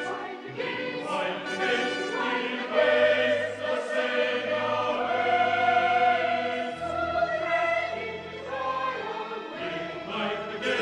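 Church choir of boys and men singing a sacred anthem, with long held chords and low sustained notes underneath.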